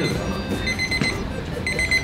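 Digital kitchen countdown timer beeping in short bursts of rapid, high-pitched pips about once a second: the 30-minute countdown has run out and the timer reads zero.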